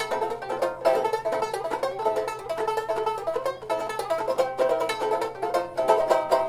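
Banjo ukulele strummed alone in quick, steady chord strokes, with no singing.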